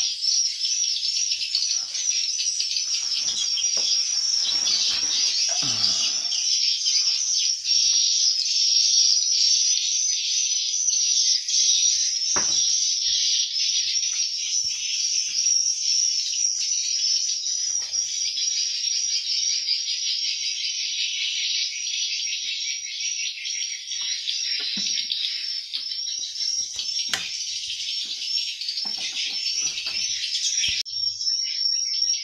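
Swiftlets twittering inside a swiftlet house: a dense, unbroken chorus of high chirps. A few soft knocks from handling come through it.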